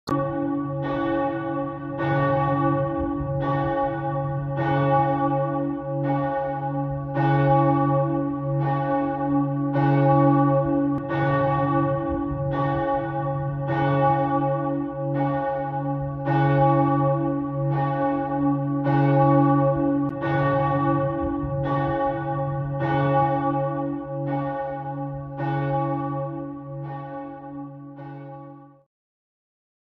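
St. Marien cathedral's church bells pealing, a little over one stroke a second, each stroke ringing into the next over a deep, steady hum. The sound tapers off near the end.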